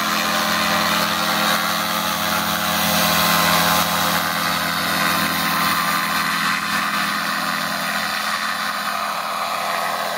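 Paramotor trike's engine and propeller running hard through the takeoff, a steady drone that peaks a few seconds in and then slowly fades as the aircraft climbs away.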